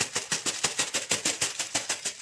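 A sheet of gold laminating foil crinkling as it is lifted and peeled off adhesive on a glass jar: a rapid run of sharp crackles.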